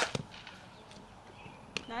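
Sharp crack of a softball bat hitting a ball at the start, followed a moment later by a fainter second knock, then a lighter pop of the ball into a fielder's glove near the end.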